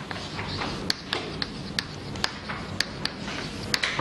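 Chalk writing on a chalkboard: soft scratchy strokes broken by about eight sharp, irregular taps as the chalk strikes the board.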